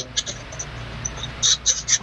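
A camera lens being wiped by hand, heard through the video-call audio as short scratchy swishes on the microphone from about a second and a half in. A low steady hum runs underneath.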